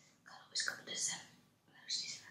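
Close-miked mouth sounds of eating: a few short, hissy, wet noises in the first second and again near the end.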